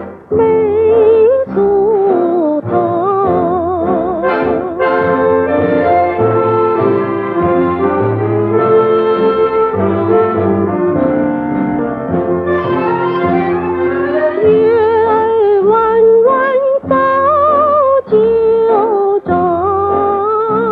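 A female singer performing a Chinese popular song (shidaiqu) with a wide vibrato over instrumental accompaniment.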